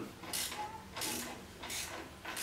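Wrench working the go-kart engine's mount bolts to set the chain tension: three short metallic rasping strokes, about two-thirds of a second apart.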